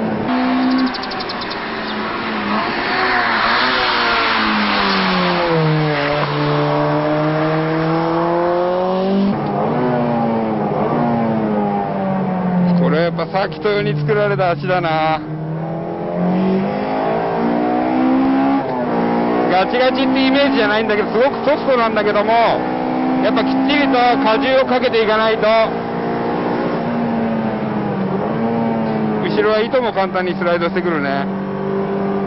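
In-cabin sound of a Spoon-tuned Honda Civic Type R EK9's high-revving engine on track, its pitch dropping and climbing repeatedly with the throttle and gear changes.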